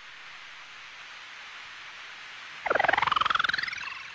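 A faint hiss, then about three seconds in a high warbling squeal that rises steadily in pitch for about a second.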